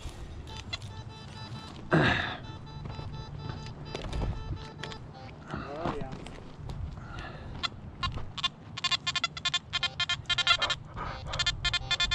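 Nokta Makro Anfibio metal detector giving a rapid run of repeated short beeps, from about eight and a half seconds until near the end, as the coil passes over a buried coin, a nickel. Fainter intermittent detector tones come earlier, with a sigh about two seconds in.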